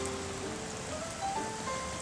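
Steady rain falling, an even hiss of drops, under soft background music that plays a slow rising run of held notes.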